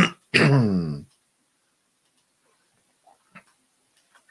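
A man clearing his throat: a rough rasp, then a short grunt that falls in pitch and is over about a second in. A single faint click follows near the end.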